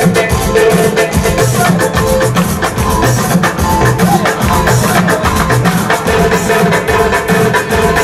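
Dance music with a fast drum beat.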